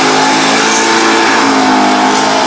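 Chevrolet Chevelle doing a burnout: the engine is held at high revs with a steady pitch while the rear tyres spin on the pavement. The sound is loud.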